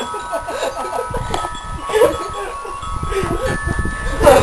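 Several steady, chime-like tones held together, with voices and soft low thuds beneath.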